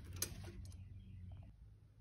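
A few faint metallic clicks from a steel roller chain handled on its sprockets, over a low steady hum; the clicks stop after the first half-second or so.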